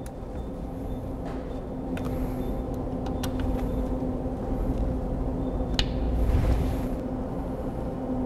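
Steady low hum of workshop machinery, with a few faint clicks as the robot's motor mounting bolts are worked with a socket wrench.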